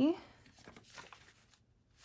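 Paper banknotes rustling faintly in a few short, soft bursts as a handful of $20 bills is picked up and fanned out by hand.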